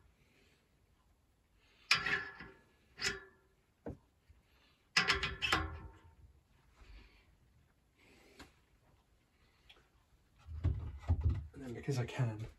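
Metal clinks and knocks as a steel bearing-press guide and the drive-side bearing are fitted onto a Hope RS1 rear hub: a few sharp clinks that ring briefly, clustered about two seconds and five seconds in.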